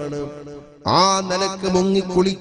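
A man's voice chanting a melodic recitation with long held notes; it fades briefly, then comes back a little under a second in with a note that rises and is held.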